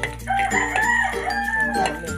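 One long, wavering animal call lasting about a second and a half, with steady background music underneath.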